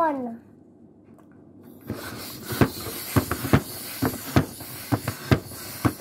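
Hand balloon pump inflating a balloon: a rushing hiss of air with a sharp click on each stroke, about two to three strokes a second, starting about two seconds in.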